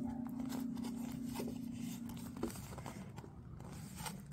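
Light rustling and crinkling of plastic wrap and a cardboard box being handled, with small clicks. A steady low hum runs under it and stops a little past halfway through.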